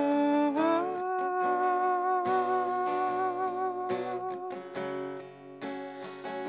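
A woman singing long-held notes into a microphone, accompanied by a plucked acoustic guitar.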